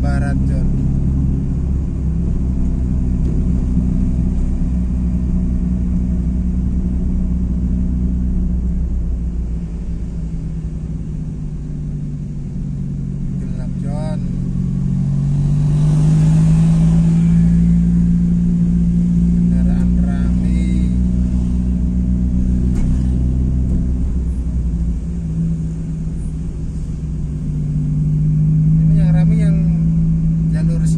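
Car engine heard from inside the cabin, a steady low hum whose pitch climbs about halfway through as the car speeds up, drops back a few seconds later as it slows, and climbs again near the end: creeping along in slow traffic.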